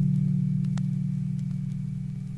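The song's last low chord on guitar and bass ringing out and slowly fading, with a few sharp clicks of vinyl record surface noise.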